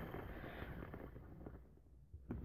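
Faint handling noise from the plastic game, with a few soft ticks, fading almost to silence near the end.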